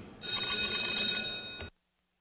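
Electric voting bell in a legislative chamber ringing loudly for about a second and a half, the signal that the voting machine has been unlocked and the vote is open; it cuts off abruptly.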